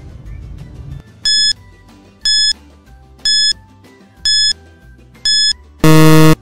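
Quiz countdown-timer sound effect: five short high beeps about a second apart, then a loud buzzer near the end marking that time is up, over quiet background music.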